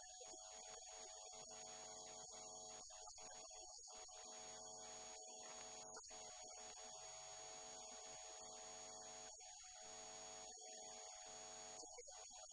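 Near silence with a faint, steady electrical hum and a high whine.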